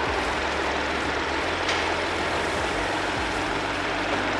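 Mini Cooper Clubman's 1.5-litre turbocharged three-cylinder engine idling steadily with the hood open, heard close up in the engine bay. The idle is even and sounds healthy.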